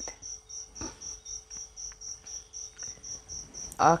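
Steady high-pitched chirping, about three even chirps a second, like a chirping insect, with a faint steady hum beneath.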